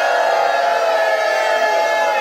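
A group of guests shouting a toast cheer together, many voices holding one long drawn-out note.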